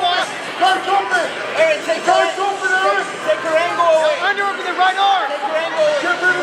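Shouting voices throughout, several at once, typical of cageside coaches yelling instructions over a crowd.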